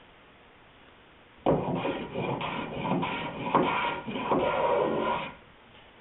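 Small hand plane shaving the top edge of a wooden boat rail in a quick run of repeated strokes, starting about a second and a half in and stopping shortly before the end, taking a little more off to bevel the rail to the hull.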